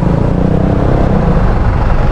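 Motorcycle and scooter engines idling in stopped city traffic: a steady low rumble with no break.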